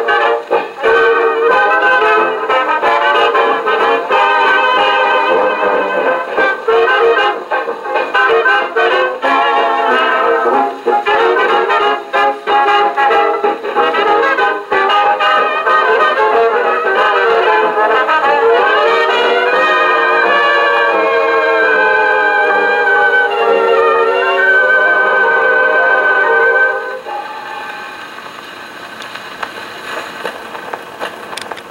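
A 1929 dance-band 78 record played acoustically on an RCA Victor 2-65 portable Orthophonic Victrola, through its horn: a brass-led instrumental close with a tad of warble from drag on the motor. The music stops about 27 seconds in, leaving only the quieter noise of the needle in the groove.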